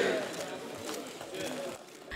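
A crowd of voices in a large hall, a cheer dying away into faint murmuring chatter that fades out near the end.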